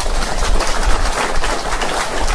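An audience clapping, a dense, even patter of many hands.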